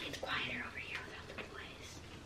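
Soft, low whispering from a person.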